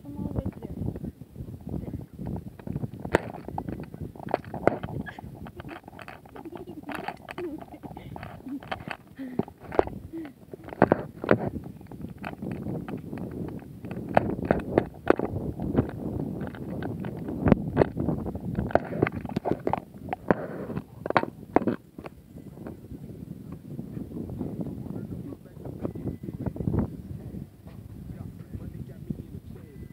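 Rubbing and knocking of a phone microphone pressed against skin and clothing as the wearer moves, irregular sharp knocks over a low rumble, with indistinct voices.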